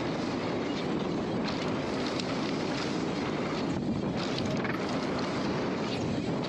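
Wind buffeting the camera microphone and mountain-bike tyres rolling fast over a hard-packed dirt trail. The rush is a steady roar with scattered small clicks and rattles from the bike.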